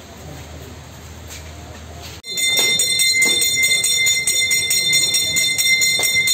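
Low steady background noise, then about two seconds in a small metal hand bell starts abruptly. It is rung rapidly and continuously, with several high ringing notes held under quick strokes, of the kind rung during Hindu funeral rites.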